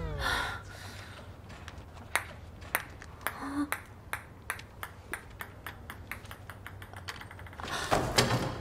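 A run of short, sharp clicks or taps, spaced irregularly and coming faster in the second half, over a low steady hum.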